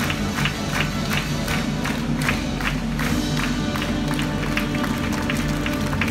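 Lively cancan show music played loud through theatre speakers, with a sharp beat about three times a second, and an audience clapping and cheering.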